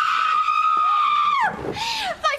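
A woman's long, high-pitched scream, held steady for about a second and a half and then falling away in pitch, with a short, lower cry just after it.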